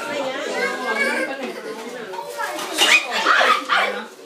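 Several people talking at once, children's voices among the adults'; no one voice stands out.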